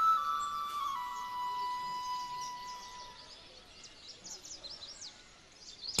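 Background score flute holding long notes that step down in pitch and fade out about three seconds in, with faint bird chirps.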